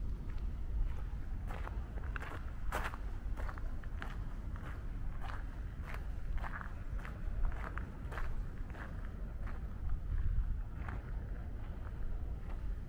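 Footsteps of a person walking on a garden path, about two steps a second, over a steady low rumble.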